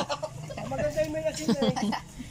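A chicken calling, with one drawn-out note from about half a second in, under people's voices.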